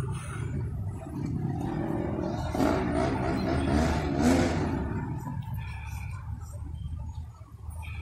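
A vehicle driving past on the street: its noise swells a couple of seconds in, is loudest around the middle, and fades away, over a steady low traffic rumble.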